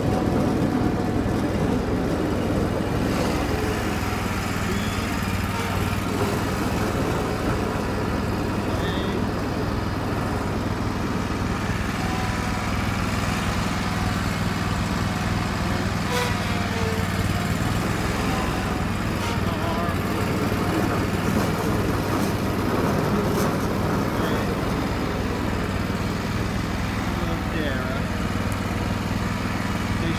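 Lawn mower engine running steadily at a constant speed.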